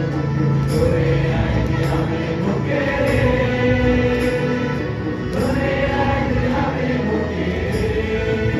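Mixed choir of young men and women singing a gospel song, with a steady beat about once a second.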